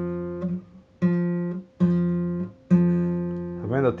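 Nylon-string classical guitar: one note plucked three times, about a second apart, each ringing out and fading within a second. It is the octave of the root of an F barre chord, picked out on its own.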